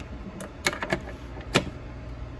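Several sharp plastic clicks, about five in just over a second, as a DC cable plug is handled and seated in the input port of a Bluetti EB55 portable power station, over a steady low hum.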